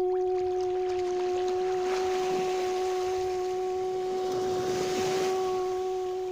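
One steady held tone with a couple of faint overtones, unchanging in pitch and loudness, over a wash of sea water that swells twice.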